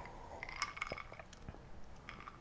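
Faint mouth sounds of a person drinking an iced drink from a glass: quiet sips and swallows with a few small scattered clicks.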